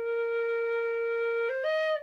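Generation B-flat tin whistle sounding its bottom note, a clear held tone sitting right on B flat, then stepping quickly up through two higher notes near the end.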